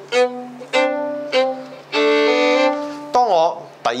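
Solo violin playing double stops, four bowed notes with the last held about a second. Each stroke starts strongly and then fades. A brief spoken word follows near the end.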